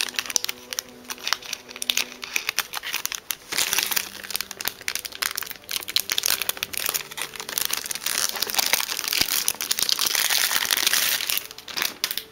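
Packaging crinkling and crackling continuously as it is handled and unwrapped, a dense, irregular crackle throughout.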